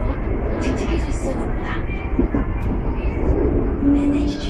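Ride noise inside a carriage of an MTR SP1900 electric train running at speed: a steady, loud rumble of the wheels on the track.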